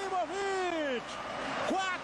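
A male sports commentator's raised voice on a television broadcast, drawing out one long word that falls in pitch over about a second. A short stretch of noise follows, then his voice resumes near the end.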